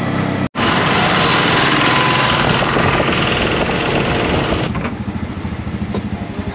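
Tuk-tuk's small engine running under loud road and wind noise while driving. About four and a half seconds in the rushing noise drops away, leaving the engine's even low pulsing as it slows.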